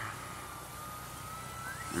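80 mm electric ducted fan of an FMS BAE Hawk RC jet whining at low throttle, a thin steady tone that glides upward near the end as the fan begins to spool up for the takeoff run.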